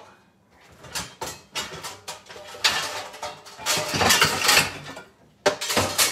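Pots, pans and a bulky appliance clattering and scraping in a lower kitchen cabinet as they are shifted around, ending with a couple of sharp knocks.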